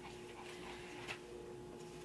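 Quiet room tone with a faint steady hum, and a faint click about halfway through.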